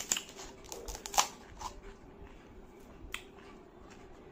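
Crisp fried puri (golgappa) shells cracking, a few short sharp crackles with the loudest about a second in.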